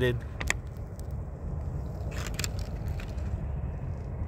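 A steady low outdoor rumble with a couple of sharp clicks about half a second in and a brief clatter about two seconds in.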